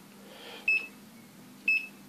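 Digital multimeter beeping as its range button is pressed: two short, high beeps about a second apart.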